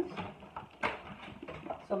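Rummaging inside a soft-sided Yeti cooler bag: rustling and crinkling of packaging as a cardboard frozen-food box is pulled out, with one sharp crackle about a second in.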